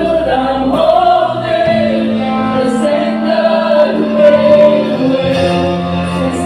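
A mixed group of worship singers on microphones singing a gospel worship song together, backed by a band with electric guitars, keyboard and drums. The deep bass drops away about a second in, leaving held voices and chords.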